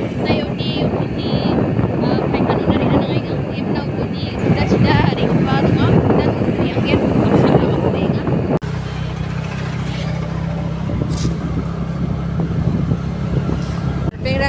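Wind rushing over the microphone of a moving motorcycle. It cuts off suddenly about eight and a half seconds in, giving way to a steady, low engine hum from a vehicle driving along.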